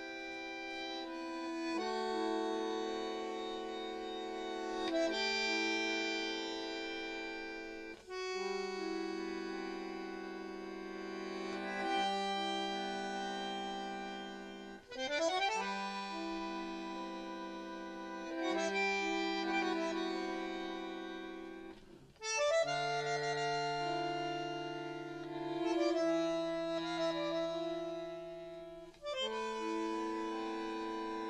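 Bandoneon playing slow, sustained chords in phrases that swell in volume and break off briefly about every seven seconds.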